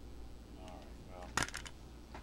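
A short, sharp clatter of hard plastic, a few quick clicks in a row about one and a half seconds in, as a cassette is handled over a boombox. A low steady hum sits underneath.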